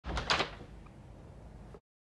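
A front door with a glass panel being opened: a few quick clacks of the latch and frame in the first half second, then faint room tone that cuts off suddenly near the end.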